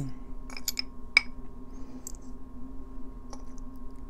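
Needle-nose pliers picking small metal charms and rings out of a bowl of liquid, making a few light, scattered clicks and clinks, the sharpest about a second in.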